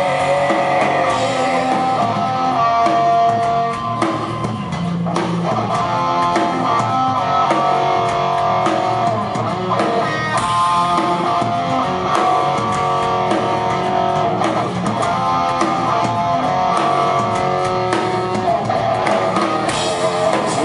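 Live rock band playing an instrumental passage: electric guitar lines of held, sustained notes over bass guitar and a drum kit with frequent cymbal hits, without singing.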